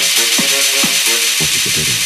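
Electronic trance/techno music at a build-up: repeating synth chord stabs over a steady hissing noise wash, with no kick drum. Low bass notes come in about one and a half seconds in.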